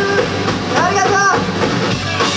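A rock band playing live and loud, a dense wash of electric guitars and drums, with a voice singing out over it about a second in.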